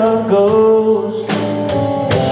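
Live band playing: a male voice holds a long sung note over electric and acoustic guitars and drums. Near the end the band moves to a new chord with a cymbal crash.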